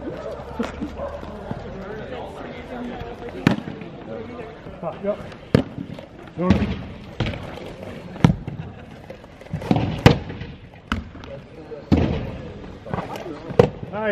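Lacrosse balls being shot and striking the goalie's pads, stick and the surrounding boards and net: about ten sharp cracks and knocks at irregular intervals.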